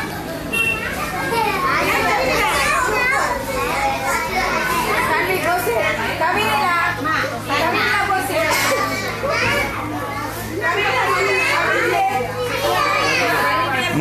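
A crowd of young children chattering and calling out all at once, many voices overlapping without a break, over a low steady hum.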